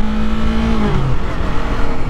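Yamaha R3's 321 cc parallel-twin engine on its stock exhaust, running while the bike rides at road speed, with wind rumble on the microphone. The engine note holds steady, then drops clearly lower about a second in.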